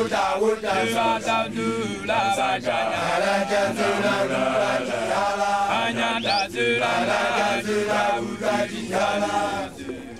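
A group of young men chanting together in unison, the song of Basotho initiates (makoloane), with a short break just before the end.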